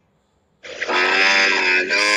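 Brief near silence, then a person's voice starting about half a second in, holding long, level notes.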